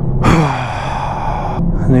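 A man's long, exasperated sigh, "uf", at a lap time that is no better, falling in pitch as it trails off, over the steady low hum of the car's engine in the cabin.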